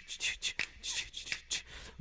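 Rhythmic vocal "ch-ch-ch-ch" hissing that imitates a toothbrush scrubbing, about four strokes a second.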